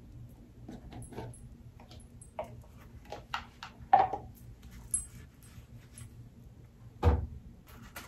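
Light handling of a small cardboard jewelry box and a fabric drawstring pouch: scattered soft clicks and rustles as the box is opened and the pouch taken out, with a dull thump about seven seconds in.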